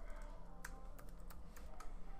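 Computer keyboard typing: four or five separate, spaced-out key taps, faint, over a low steady hum.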